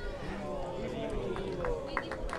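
Faint background voices of several people talking, with a few small clicks near the end.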